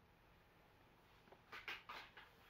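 Near silence: room tone, with a few faint short sounds near the end.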